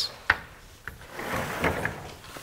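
Chalk on a blackboard: a sharp tap about a third of a second in, then a short stretch of chalk scraping across the board as a letter is written.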